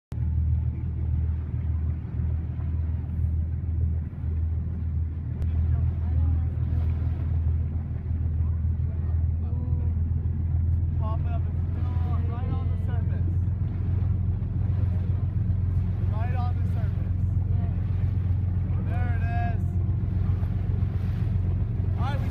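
A boat's engine running steadily, a constant low drone, with faint voices of people talking from about halfway through.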